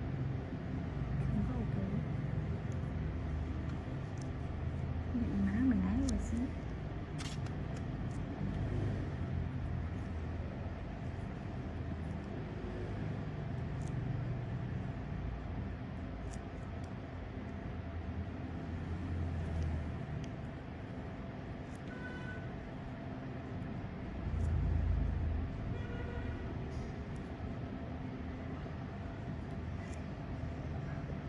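A low, steady background rumble with a few faint words of speech about five seconds in.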